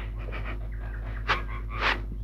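A girl crying, with two short breathy sniffs partway through and near the end, over a steady low hum in the old film soundtrack.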